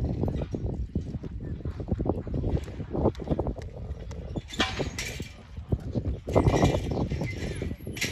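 Horses running on a dirt arena floor after a steer, hooves thudding in quick, uneven beats, with people calling out twice in the second half.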